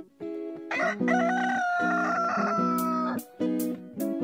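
A rooster crowing once in a long cock-a-doodle-doo that starts about a second in, over theme music of plucked strings. Sharp percussive hits join the music near the end.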